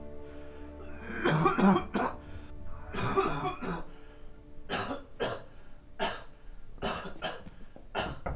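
A man coughing: two rough, heavy coughing bouts about one and three seconds in, followed by several short, sharp coughs. Soft music with held notes fades out in the first second.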